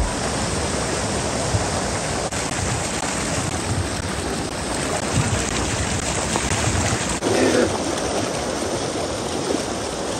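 Steady rush of water flowing over rocks in a shallow mountain stream, an even, continuous hiss.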